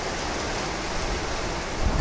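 Steady rushing background noise with no distinct events, even in level throughout.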